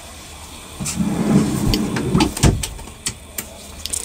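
A wooden cabin drawer rolling shut on its metal ball-bearing slides, a rattling rumble lasting about a second and a half that ends in a knock as it closes.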